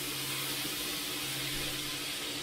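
Kitchen tap running into the sink during dishwashing: a steady, even hiss of water, with a low steady hum underneath.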